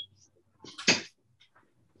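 Handling noise close to the microphone as a diploma folder is moved about: faint rustles, then a single sharp knock about a second in.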